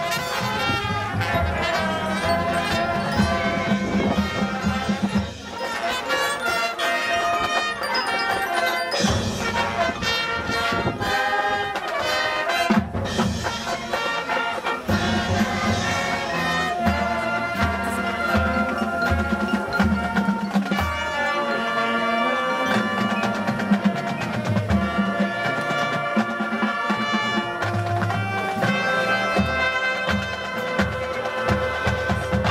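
Marching band playing: brass with drums and percussion.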